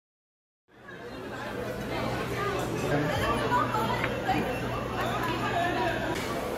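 Silence, then about a second in a busy restaurant's ambience fades in: many voices chatting over each other, with a steady low hum underneath.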